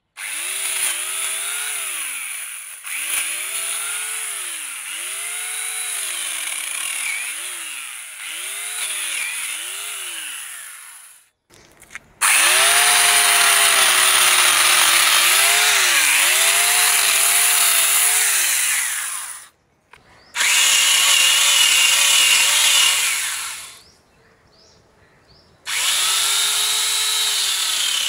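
Electric angle grinder fitted with a chainsaw conversion attachment, cutting through a log; the motor's whine sags in pitch and recovers again and again as the chain bites into the wood. The sound cuts off abruptly three times with short gaps, the last a couple of seconds long.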